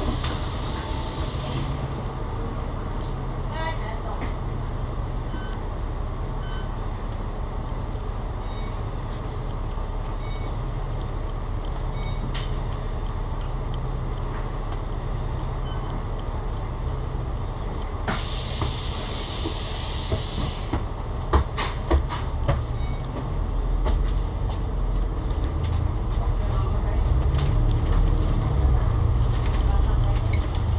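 Diesel engine of an Alexander Dennis Enviro500 MMC double-decker bus (Cummins L9 six-cylinder) idling at a stop, heard from the upper deck. A few knocks come about two-thirds of the way through. From about 23 seconds in, the engine note rises and grows louder as the bus pulls away.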